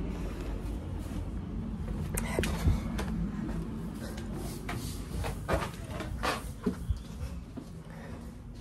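Irregular knocks and clicks, about eight of them and mostly in the second half, over a steady low rumble of handling noise. These are the sounds of someone moving about the house with a phone in hand.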